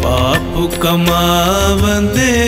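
Sikh Gurbani kirtan music: a sustained melody whose pitch bends and glides over a steady low drone.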